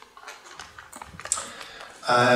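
A few faint, scattered clicks and small rustles between sentences, with a brief soft hiss a little past the middle.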